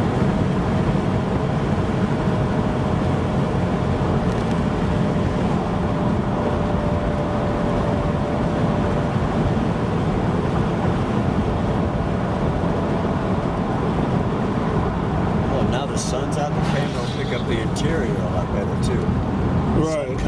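Steady road noise from a 1991 Buick Reatta cruising on a country road, heard from inside the car: an even rumble of tyres and wind. A faint steady whine runs under it and fades out about three-quarters of the way through. A few light clicks come near the end.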